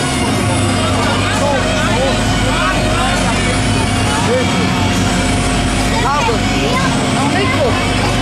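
Steady low machine hum of a fairground ride running, with people's voices chattering over it.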